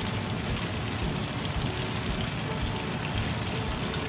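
A pan of thin onion, tomato and spice curry base simmering on the stove, a steady bubbling crackle.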